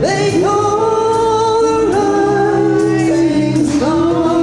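Live singing from a small cover band: long held notes, sliding up into each new note, with a new phrase starting about two seconds in and again near the end.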